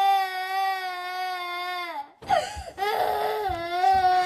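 A young girl crying in two long, sustained wails. The first breaks off about two seconds in, and the second follows after a brief gasp.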